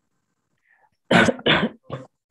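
A person coughing: two sharp coughs about a second in, then a smaller third.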